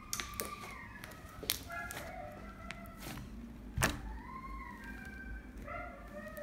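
Slime being squeezed and pressed against a wooden table, with a few light taps and one thud about four seconds in. Faint pitched sounds run in the background.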